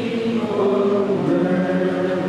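A slow meditation hymn being sung, with long drawn-out notes; the melody steps to a new note a little past the middle.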